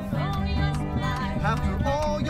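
Acoustic country-folk band playing live: strummed acoustic guitar with a bass line under it and a wavering melodic line over it.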